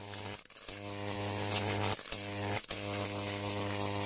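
A low, steady electric buzz with a strong hum, cutting out briefly three times with crackles: an electrical buzz sound effect under the outro logo.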